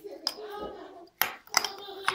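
A metal spoon clinking against a small glass jar a few times, sharp clicks, as it digs into the slush of a 25% ethylene glycol antifreeze mix that has frozen soft rather than hard at −22 °C.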